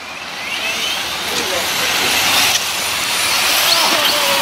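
Radio-controlled cars driving over wet concrete: a steady hiss of tyres through water that grows slowly louder, with short rising whines from the electric motors.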